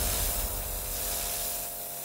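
Kärcher pressure washer spraying a jet of water onto paving stones: a steady hiss.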